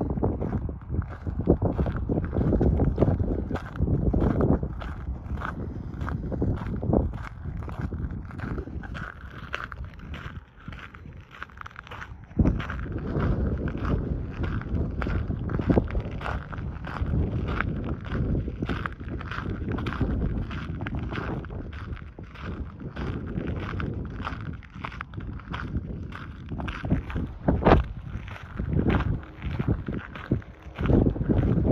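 Footsteps crunching on a gravel trail at a steady walking pace, with wind rumbling and buffeting the microphone in gusts.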